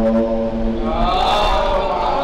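A man chanting an Arabic religious recitation, holding one long steady note and then moving into a new note that rises and falls about a second in.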